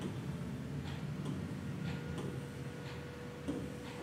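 Light, irregular taps of a pen or finger on an interactive smart board's screen as rectangles are drawn. A faint steady hum comes in about halfway through.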